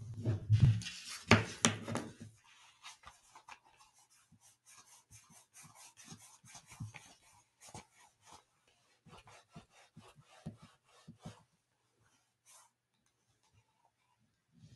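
Cotton-gloved hands handling a gaming headset and its cable: a spell of rubbing and rustling with a few knocks in the first two seconds or so, then a run of small, light clicks and taps from the plastic headset and cable that thins out near the end.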